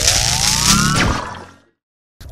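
A transition whoosh sound effect: a hiss with a rising tone that sweeps up for about a second, then fades out.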